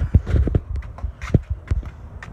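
Footsteps on concrete: an irregular string of dull thumps, several a second, with some handling rustle.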